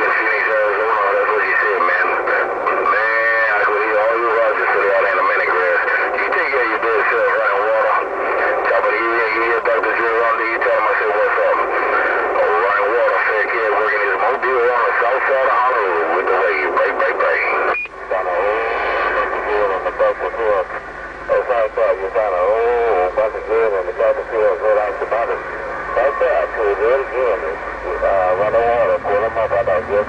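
Uniden HR2510 10-meter transceiver's speaker carrying garbled, unintelligible voices over static, a continuous stream of radio chatter with a brief break a little past the middle.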